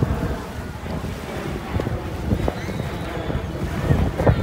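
Wind buffeting the microphone in an irregular low rumble, over the wash of surf on the beach.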